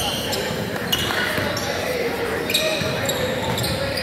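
A basketball being dribbled on a hardwood gym floor, heard among the general din of a large gymnasium with faint background voices.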